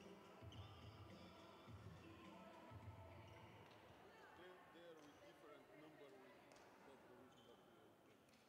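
Near silence: faint sports-hall ambience with distant voices echoing. Soft background music with a low beat fades out after about three seconds.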